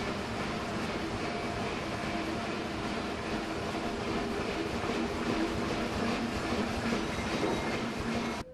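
A steady, unchanging mechanical running noise with a low hum under it.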